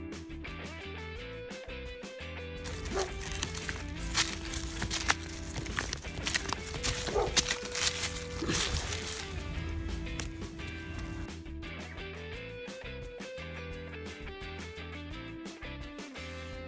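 Quiet background music, a slow melody of held notes. In the middle come faint scrapes and rustles from hands digging potatoes out of loose soil.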